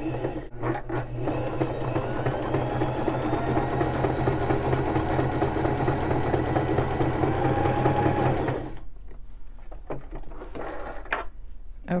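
Electric sewing machine stitching a narrow, very short zigzag (a bar tack), running steadily and then stopping about three-quarters of the way through. A few light clicks follow as the work is handled at the machine.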